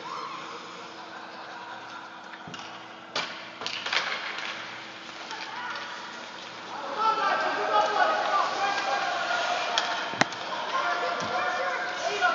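Youth ice hockey game in an indoor rink: several voices calling out at once, getting louder and busier about seven seconds in, with a few sharp clacks of sticks and puck, around three and four seconds in and again near ten.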